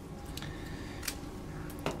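Quiet background with a few faint, short clicks of hands handling orchid stems, the clearest just before the end.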